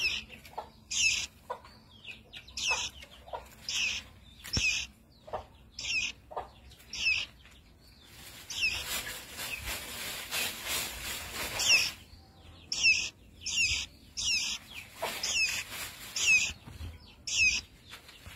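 A caged baby songbird calling with short, high, downward-sweeping chirps, repeated one to two a second. The calls stop for about four seconds midway, where a steady noise fills in, then resume.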